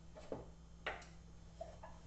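A few light knocks and clicks of wooden serving boards being handled and stacked, the sharpest a little under a second in, over a faint steady low hum.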